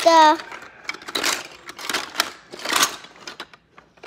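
Plastic toy food and play dishes clacking and rustling as they are rummaged through, in three short runs of clatter about a second apart.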